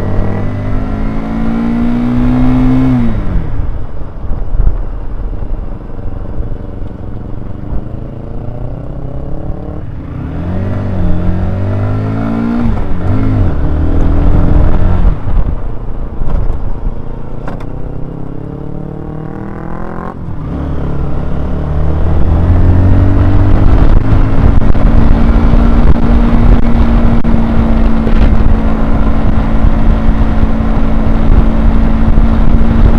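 Honda CBR125R's single-cylinder four-stroke engine, heard on board while riding: it climbs in pitch and drops back several times, then holds a steady cruising note for the last third.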